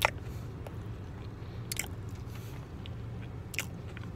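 A person chewing a soft cream cheese coffee cake, with a few sharp mouth clicks and smacks (one right at the start, others near the middle and near the end) over a steady low hum.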